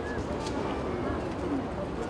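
Outdoor ambience of a hill town: a steady background hiss with short chirps near the start and distant voices.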